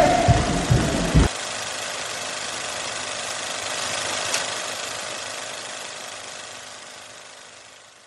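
Music with singing cuts off abruptly about a second in. It leaves a steady noise-like hiss that slowly fades out, with one faint click near the middle.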